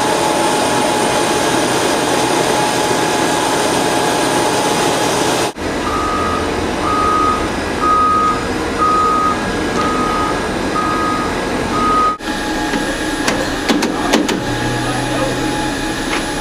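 A steady machine drone with a faint whine, then after a cut a large-wheeled vehicle's reversing alarm beeping seven times, a little more than one beep a second, over its engine. After another cut come a few sharp metal clicks and a low hum.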